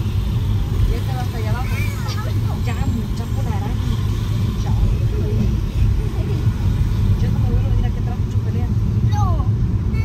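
Car driving in slow traffic, heard from inside the cabin: a steady low rumble of engine and road noise, with faint indistinct voices over it.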